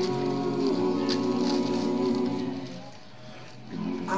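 A cappella male vocal group singing, several voices holding a steady chord together for nearly three seconds before it dies away into a brief quieter stretch.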